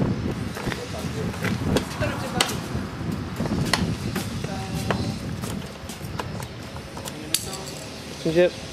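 Indistinct background voices with scattered sharp clicks and knocks over a low, uneven rumble.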